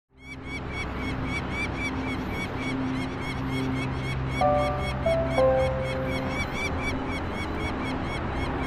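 Peregrine falcon giving its harsh, rapidly repeated alarm call, about four calls a second and steady throughout, over a low steady hum. A few short held tones sound in the middle.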